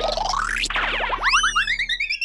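Cartoon sound effects over background music: a whistle-like glide that dips and swoops back up, then a quick run of rising chirps.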